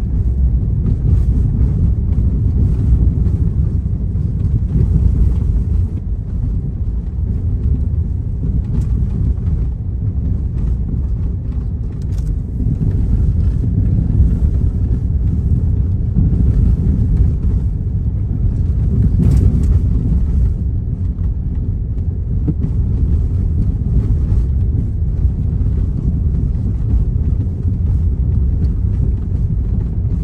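Steady low rumble of a car driving, heard inside the cabin: engine and tyre road noise, with a few faint ticks.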